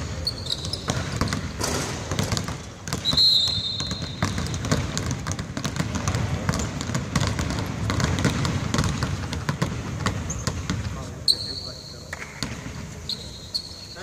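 Several basketballs dribbled on a hardwood court in a large arena, the bounces quick and overlapping, with voices in the background and a few short high squeaks.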